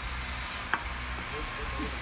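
A single sharp click as a black hole-cover cap is pressed into a bolt hole in a steel gate post, over a steady background hiss.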